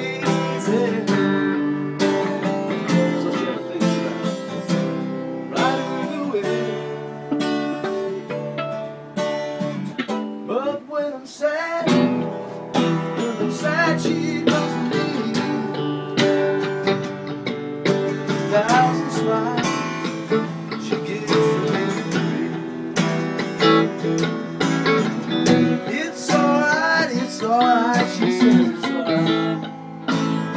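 Live guitar music: an acoustic guitar strummed alongside an electric guitar played through an amplifier, playing together without a break, with lead notes that slide up and down in pitch.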